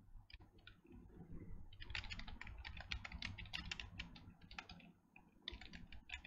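Typing on a computer keyboard: a few scattered keystrokes, then a quick run of keystrokes from about two seconds in, a short pause near the end, and a few more.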